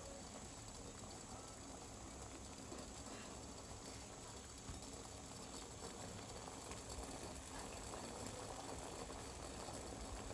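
Milk tea boiling in a steel saucepan on a gas stove: a faint, steady bubbling.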